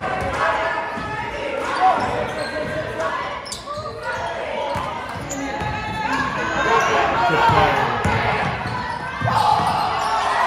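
Basketball being dribbled on a hardwood gym court during a game, amid players' and spectators' voices, all echoing in a large gymnasium.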